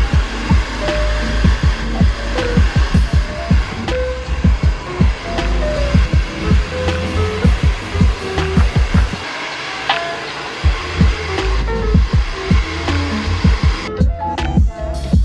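Background music with a steady beat, with the steady blowing of a hair dryer underneath it.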